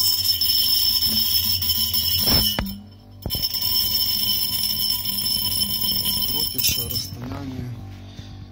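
A piece of steel nail spun at full speed by a homemade magnetic stirrer inside an empty three-litre glass jar, running against the glass so that the jar rings with steady high tones. The ringing breaks off for a moment about three seconds in, resumes, and dies away near the end.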